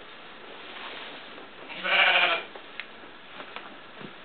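A sheep bleating once, a single quavering call of about half a second, about two seconds in.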